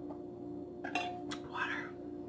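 Close-up eating sounds: a couple of wet mouth clicks while chewing, then a short breathy mouth sound, over a steady low hum.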